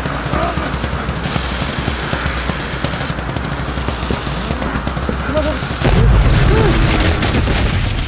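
A film soundtrack: a dense rumbling sound-effects bed under music, with a man's voice muttering. A deep boom swells in about six seconds in and holds.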